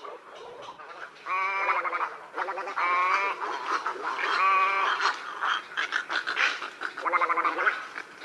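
Heron calling: four harsh, rasping croaks, each lasting under a second.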